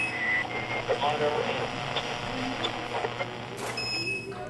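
Faint, indistinct voices over a steady background hiss and low hum, with a brief spoken "oh" near the end.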